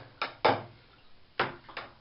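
Four short knocks in two pairs about a second apart, from a wooden lure and its line being handled in a water-filled bathtub.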